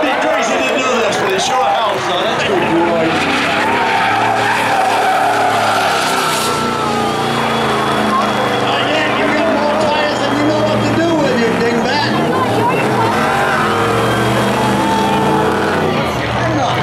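2002 Chevy Silverado 2500HD's 6.0 L V8 through Flowmaster mufflers, revved hard and rising and falling in pitch as the truck drifts, with tyres squealing and skidding under wheelspin.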